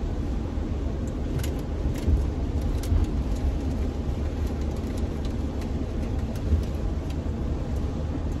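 Cabin noise of a Mercedes-Benz van on the move: a steady low rumble of engine and tyres, with a few faint scattered ticks.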